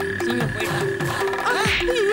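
Comic synthesizer background music: a pulsing held note over repeated short downward-sliding low tones, with warbling chirps near the end.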